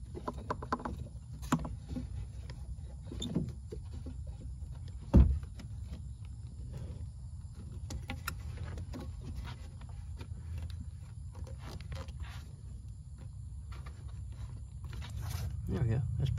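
Hands working a rubber hose into place against engine parts: scattered clicks, scrapes and rustles, with one sharp knock about five seconds in, over a steady low rumble.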